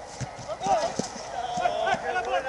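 Football players shouting to each other on the pitch during a goalmouth scramble, several voices overlapping, with a few short sharp knocks in the first second.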